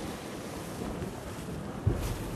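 Wind buffeting the microphone over surf washing against the rocks below, with one dull thump near the end.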